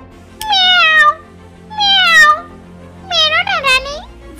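A cat meowing three times, each meow falling in pitch and the last one wavering, over steady background music.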